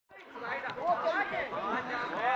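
Several people's voices chattering, overlapping one another.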